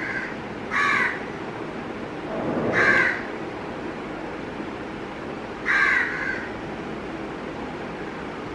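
A crow cawing three times, about a second in, near three seconds and near six seconds, each call short and harsh, over a steady background hiss.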